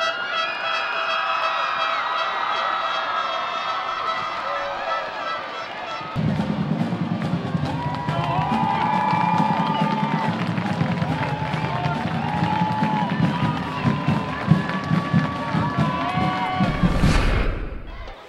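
Marching band brass playing. Held chords for about six seconds, then an abrupt change to a busier section with a pulsing low beat.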